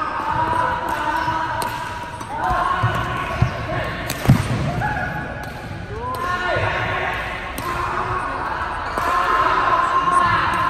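Badminton rackets striking a shuttlecock about once a second, with rubber-soled shoes squeaking on the court floor and voices in the background, all echoing in a large sports hall.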